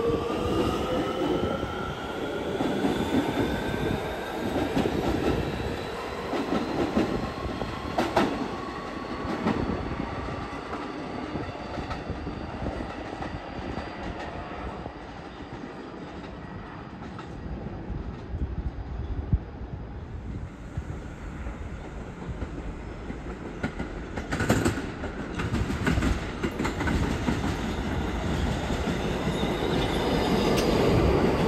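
R211A subway train pulling out, its traction motors giving a whine of several tones that rises in pitch over the first few seconds and then fades as the rumble and wheel noise die away. Later a second train comes in along the platform, with sharp wheel clanks and squeal about two-thirds of the way through and its rumble growing near the end.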